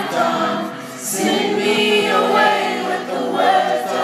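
Live band music with sung vocals, heard from the stands of a large arena, where many voices seem to blend together in the singing.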